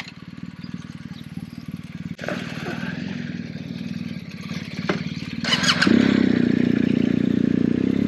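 BMW R 1250 GS motorcycle's boxer-twin engine idling, then running louder and steadier from about six seconds in as the bike moves off.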